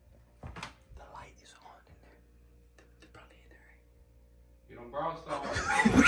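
Hushed whispering, then near the end a sudden loud outburst of voices and laughter.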